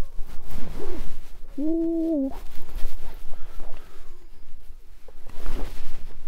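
A man's drawn-out wordless vocal sound, a single held note of under a second about two seconds in, with fainter short vocal sounds around it, as a hooked fish is fought on a bent rod.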